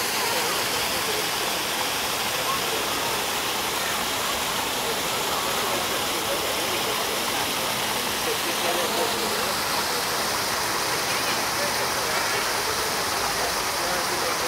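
Water from the Fountain of the Four Rivers pouring steadily from its jets into the stone basin. People talk indistinctly in the background.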